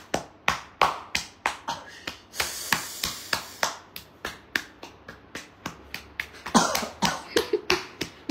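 A hand patting and slapping bare skin in a massage, a quick run of sharp smacks about three a second. About two and a half seconds in there is a second of breathy hiss, and near the end a man's voice cries out briefly.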